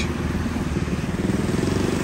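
A motorbike engine running close by as it passes, with a fast, even pulsing beat.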